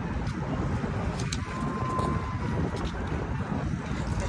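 Wind buffeting a phone's microphone outdoors: a steady, dense low rumble of wind noise. A faint thin tone sounds briefly about a second in.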